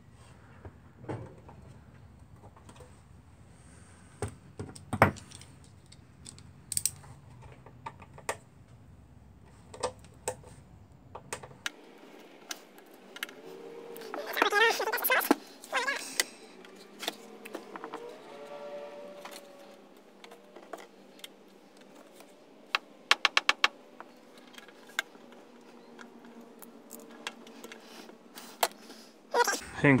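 Small metal tools and screwdriver bits clicking and rattling on a workbench: scattered single clicks, a louder clatter about halfway through, and a quick run of about five sharp clicks a few seconds later.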